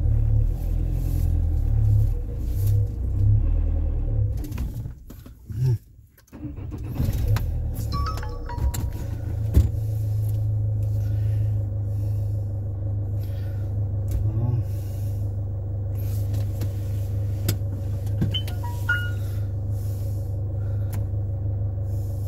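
Truck engine heard from inside the cab, running unevenly, then dying away about five seconds in as it stalls. It starts again about a second later and settles into a steady running hum.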